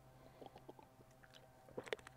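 Faint gulping and swallowing as a man drinks from a plastic water bottle, with a few soft sounds about half a second in and a slightly louder one near the end.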